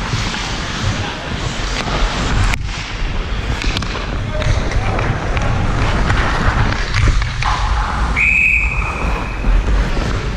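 Hockey skates carving and scraping on the ice, with air rushing over the helmet-mounted camera's microphone and sharp clacks of sticks and puck. Near the end a whistle sounds once, a steady note held for about a second and a half.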